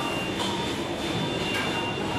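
Steady low rumble of a busy indoor food court, with a faint thin high tone and a couple of light clinks, about half a second and a second and a half in.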